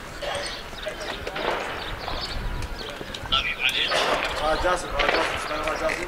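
Indistinct voices calling out, growing louder in the second half, over a low steady rumble.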